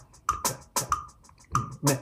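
Rhythm-trainer web app playing back a syncopated sixteenth-note rhythm: short, sharp sampled snare-drum hits and click-track clicks, a few each second.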